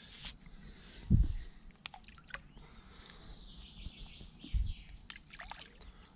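Small pinches of damp bleak groundbait landing in still water with light plops and drips, and two dull thumps.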